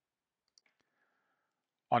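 Near silence: room tone, with one faint click about half a second in. A man's voice begins speaking at the very end.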